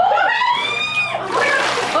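A woman's high, drawn-out squeal, then water splashing and sloshing in a cold-plunge tub as she dunks fully under and comes back up.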